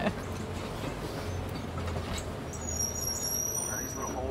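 Safari truck's engine running low and steady as the truck rolls slowly along a dirt track, heard from inside its open-sided cab.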